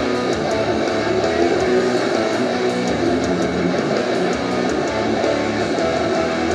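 A live rock band playing an instrumental passage led by electric guitar, with regular sharp drum or cymbal strikes.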